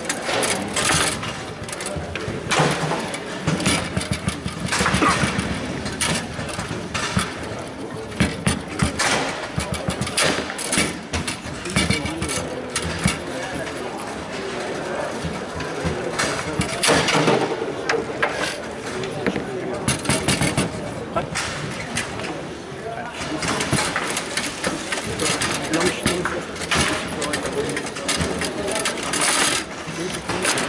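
Foosball play: the ball and rods clacking on a foosball table, with rapid irregular knocks as the plastic men strike and trap the ball and it hits the walls, louder flurries around 17 s and from about 24 s on.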